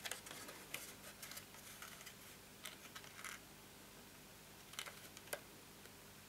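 Faint crackling and rustling of scored cardstock being bent up and pressed into box corners, in bursts over the first three seconds and again about five seconds in, ending in a sharper click.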